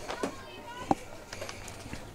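Faint outdoor ballfield ambience with distant voices and a single sharp click about a second in.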